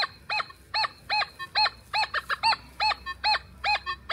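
Nokta Triple Score metal detector in Relic mode giving a quick string of short beeps, each rising and falling in pitch, about three a second, as the coil sweeps back and forth over a buried target. The target is a big piece of iron, signalled here with iron reject set at its lowest setting, one.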